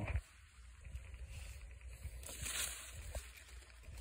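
Faint rustling of vegetation and handling noise as the phone moves among jackfruit leaves. The rustle is louder for about a second a little past halfway, with a few soft clicks.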